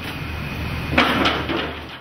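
Steady low hum and hiss in a steam oven room, with a short clatter about a second in as a wheeled steel rack tower of laulau baskets is pushed along.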